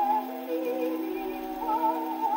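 Orthophonic Victrola playing a 1922 acoustic-era Vocalion 78 rpm record: a soprano sings held notes with a wide vibrato over sustained accompaniment, the sound thin with no bass.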